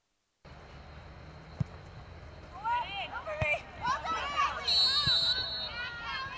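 Game sound from a women's soccer match: a low background of crowd noise, a single sharp thump, then several high voices shouting and calling over one another through the second half, with a brief shrill whistle-like tone near the end.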